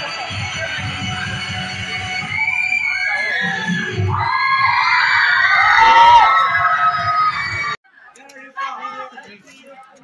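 Loud dance music with a steady beat played for a stage dance, with an audience screaming and cheering over it, the cheering growing louder from about two seconds in. The music and cheering cut off suddenly near the end, leaving faint voices.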